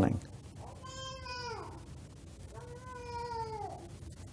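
A cat meowing faintly twice, about a second and a half apart; each meow is a held tone that drops in pitch at the end.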